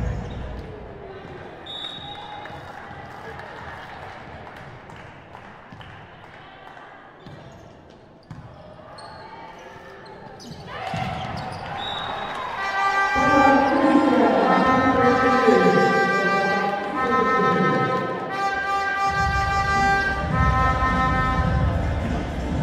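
Indoor volleyball rally in a sports hall: ball strikes and voices, fairly quiet. About halfway through, after the point is won, louder music with long held tones starts, with low beats near the end.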